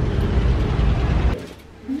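Low, steady rumble of road-vehicle engines and traffic on the street, cut off abruptly about a second and a half in, after which only quiet room tone remains.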